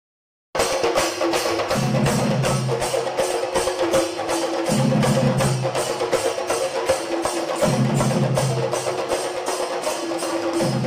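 A troupe of stick-played barrel drums beating together in a fast, steady rhythm, with a ringing tone held throughout and a deeper tone swelling about every three seconds. It starts abruptly about half a second in.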